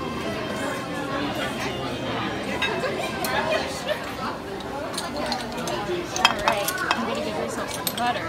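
Crowded-restaurant chatter from many voices, with clinks of dishes and metal serving utensils; a quick run of sharp clinks comes about three quarters of the way through.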